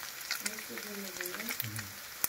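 Chopped Spam frying in a nonstick pan: steady sizzling with frequent small crackling pops.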